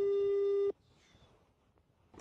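Telephone ringback tone from a mobile phone held away from the ear: one steady tone that cuts off abruptly under a second in.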